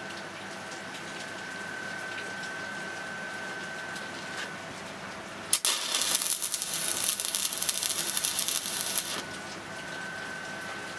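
MIG welder making a tack weld on steel: the arc strikes with a click a little past halfway and crackles for about three and a half seconds, then stops.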